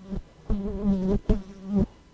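A flying insect buzzing in two bursts of well under a second each, about half a second in and again just after a second in, with a steady low pitch that wavers slightly.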